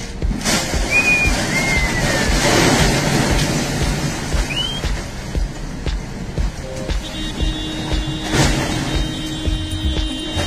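Crates of glass beer bottles spilling out of a truck's curtain-side trailer onto the road, a crashing clatter of breaking bottles that is loudest from about two to three and a half seconds in.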